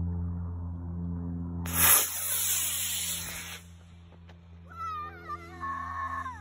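A solid-fuel model rocket motor ignites a little under two seconds in with a sudden loud rushing hiss, which fades away over about two seconds as the rocket climbs. Near the end come high, wavering excited cries from the onlookers.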